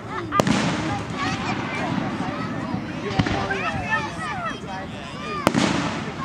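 Aerial firework shells bursting: a sharp bang about half a second in, a smaller one around the middle, and another loud bang near the end, each trailing off in echo.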